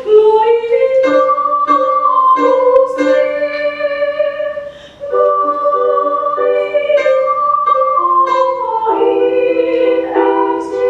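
Youth choir singing long held notes to electronic keyboard accompaniment, with a brief break between phrases about five seconds in.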